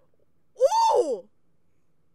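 A single short wordless vocal exclamation, like an "ooh" or a gasp, about half a second in, its pitch rising and then falling.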